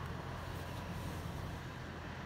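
Steady low hum inside a car's cabin while the car stands still.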